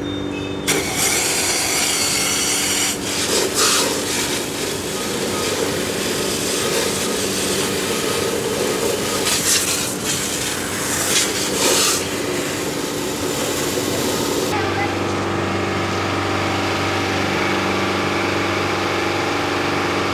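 A fire hose nozzle spraying water with a loud hiss, starting about a second in and cutting off about three quarters of the way through, over the steady hum of a fire engine's motor running its pump. The hum comes through more strongly once the hiss stops.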